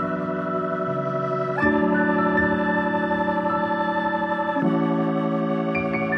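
Background music of sustained organ-like keyboard chords, changing chord twice, about every three seconds.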